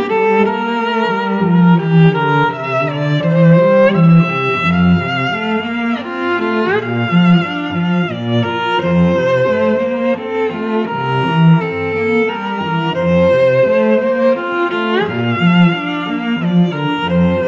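Background music played on bowed strings: a violin melody of held notes with vibrato over a lower cello line, with a couple of upward slides.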